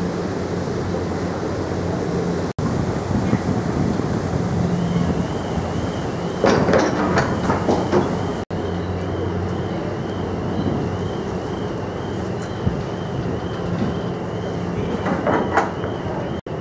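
Car ferry's engines and propellers running as it manoeuvres onto its berth, a steady low rumble with churning water. A faint warbling high tone starts about a third of the way in, and a few louder rattling knocks come in the middle and near the end.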